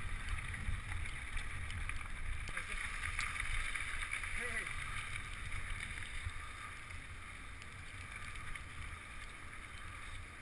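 Wind buffeting a bike-mounted action camera's microphone with a low rumble from mountain-bike tyres rolling over a dirt track, easing somewhat in the second half.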